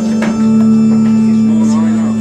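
Electronic organ holding a steady low chord that shifts to a new chord about half a second in, with voices over it.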